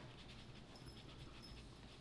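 Near silence: room tone with a few faint ticks and rustles.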